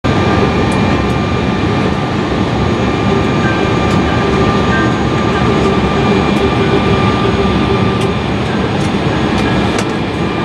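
Embraer E-175's GE CF34 turbofan engines running at low ground power, heard inside the cabin as a steady loud rumble with several steady whining tones. A few faint ticks sound over it.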